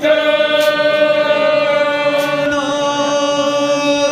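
Sikh devotional chanting: voices holding one long, steady note that shifts slightly in pitch past the middle.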